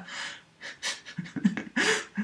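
A man laughing breathlessly: a breathy gasp at first, then short bursts of voiced laughter from about a second in.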